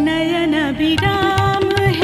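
Indian folk-style music for a stage dance: a held melody with wavering, ornamented notes over drum beats that grow stronger about halfway through.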